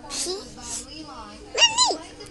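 A toddler's short, very high-pitched squeal that rises and falls, near the end. Before it come soft, breathy speech sounds.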